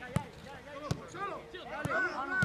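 A football kicked three times on a grass pitch, each a short sharp thud, as players pass it around, with players shouting and calling to each other from about halfway through.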